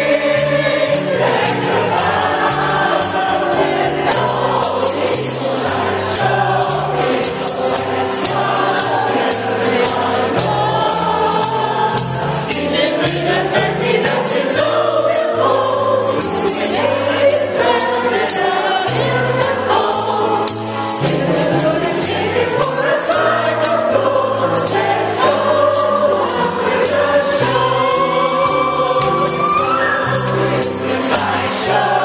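A group of women singing a gospel song together in chorus over a steady percussive beat.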